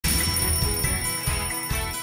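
An alarm-clock bell ringing over upbeat intro-jingle music, starting suddenly at the very beginning.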